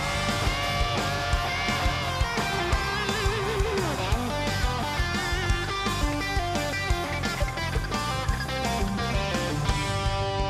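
Electric guitar solo with bent and wavering notes over a full live band, the drums keeping a steady beat.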